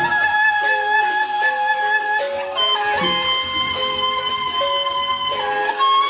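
Sasak gendang beleq ensemble playing: a melody of long held notes over steady metallic cymbal clashes, with a deep barrel-drum stroke at the start and another about halfway through.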